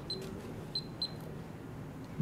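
Three short, high electronic beeps, the last two close together, over faint room tone in a large hall.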